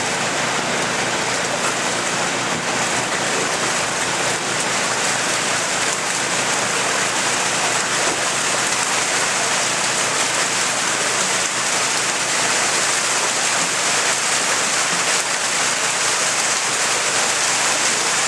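Water rushing steadily out of a fish-hauling truck's tank and down a chute, carrying a load of stocked rainbow trout, as an even splashing rush. A faint low hum runs underneath.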